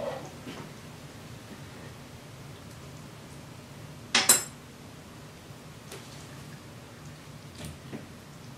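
A metal spoon set down on the counter with one sharp, ringing clink about four seconds in, over a faint steady low hum.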